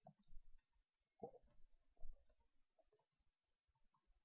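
Near silence with a few faint, scattered clicks from a computer keyboard as a chat message is typed and sent.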